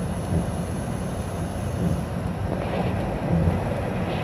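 Steady low rumble inside a car's cabin, with a faint hiss partway through as a vape is drawn on and the vapour blown out.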